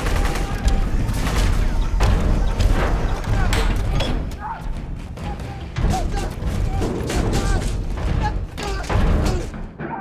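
Action film sound mix: rapid bursts of gunfire and heavy impacts over a deep rumble, with men shouting and a score underneath.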